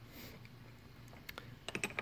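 A few faint, light clicks over quiet room tone, mostly in the second half.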